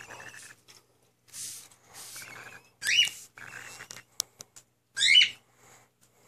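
Baby cockatiel chick calling: short raspy, breathy calls with two louder rising chirps, about three seconds in and about five seconds in. A few sharp clicks come between the chirps.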